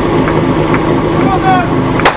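Portable fire-pump engine idling steadily on its platform, waiting for the start, with a voice calling out briefly about three-quarters of the way through.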